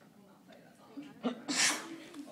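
Quiet voices in a small room, then a loud, breathy burst close to the microphone about one and a half seconds in.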